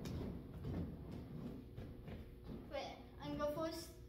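Soft, irregular thumps of a gymnast's feet on the floor mats as she attempts a switch leap, then a girl's high voice in the last second or so.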